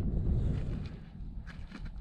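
Low wind noise rumbling on the microphone, easing off about a second in, with a few faint ticks in the second half.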